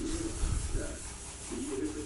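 A paper tissue rubbed back and forth over a linoleum floor, wiping up spilled tea: a soft, continuous scuffing.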